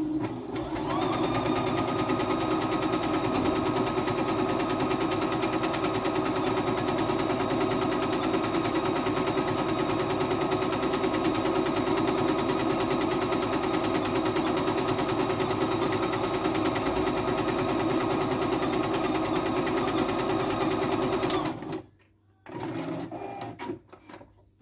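CNY E960 computerised sewing and embroidery machine in sewing mode, stitching a decorative pattern at a fast, steady rate. It starts about a second in and stops suddenly a few seconds before the end, followed by a few faint handling sounds.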